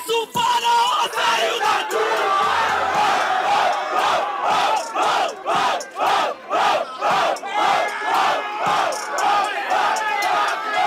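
A rap-battle crowd erupts in shouting and cheering in reaction to a punchline. About four seconds in, the shouting settles into rhythmic unison chanting, about two shouts a second.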